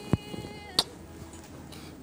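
Two short kiss smacks a little under a second apart, over a faint steady buzzing tone.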